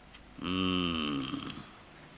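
A man's voice making a single low, held hum or grunt, about a second long, dipping slightly in pitch at the end.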